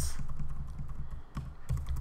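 Computer keyboard being typed on: a run of quick, irregular keystrokes as text is entered and deleted.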